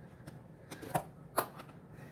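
A plastic tub of shisha tobacco being handled, giving three short clicks and rustles, the sharpest about a second and a half in.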